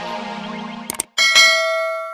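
Channel intro jingle: the music stops with two quick clicks about a second in, then one bright bell chime rings out and slowly fades.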